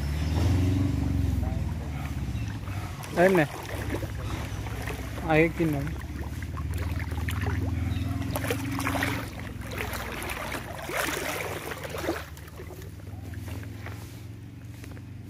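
Water splashing as a person wades in a shallow river hauling in a cast net, over a steady low hum. Two short vocal calls stand out about three and five seconds in.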